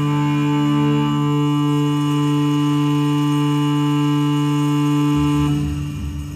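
Live instrumental music from a violin, electric guitar and drums trio: one held, droning chord of steady tones. It cuts off about five and a half seconds in, leaving a quieter low hum.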